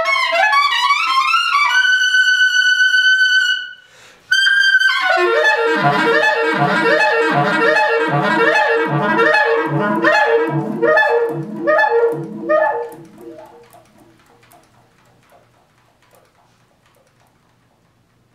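B-flat clarinet playing a fast run into a long held high note, then, after a brief break, a dense sound of several pitches at once with a low pulse repeating about one and a half times a second. It fades away about two-thirds of the way through, leaving quiet room tone.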